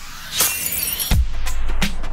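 TV channel ident music: about half a second in, a sound-effect burst of bright noise with a rising tone, then a deep bass hit about a second in, with a drum beat following.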